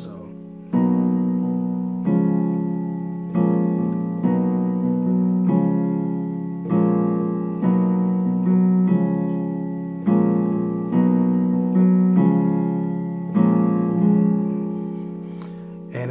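Digital keyboard on a piano voice playing sustained two-handed chords, struck about once a second and each left to ring and fade. They are B major 7, C-sharp major and A-sharp minor 7 in F-sharp major. They start about a second in.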